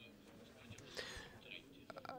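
Near silence: a pause in the speech, with a faint, indistinct voice in the background.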